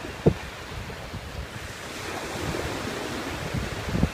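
Small surf washing on the beach, with wind rumbling over the microphone; one short thump about a quarter of a second in.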